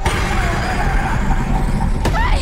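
Horror-trailer sound design: a dense, rumbling roar that starts suddenly and loudly after a quiet moment, with a wavering pitched cry running through it.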